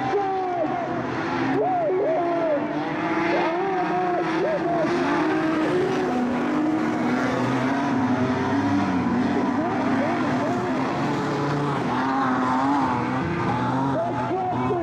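Engines of several speedway modified sedans racing on a dirt oval, revving up and down, with several engine notes overlapping.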